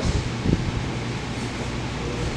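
Steady background noise of a large hall: a low hum under an even hiss, with a soft low knock about half a second in.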